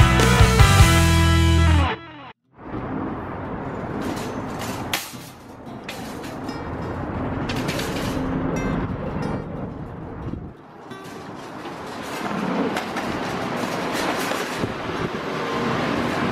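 Music plays and cuts off suddenly about two seconds in. An empty wire shopping cart is then pushed along, its metal basket and casters rattling and clattering as it rolls.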